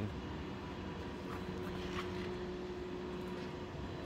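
Cadillac Fleetwood power seat motor running with a steady hum for about three seconds, then stopping, as the memory seating moves the seat; a couple of faint clicks.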